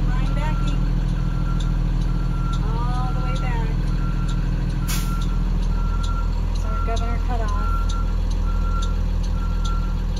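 School bus backup alarm beeping steadily about once a second while the bus reverses, over the steady drone of the bus's engine.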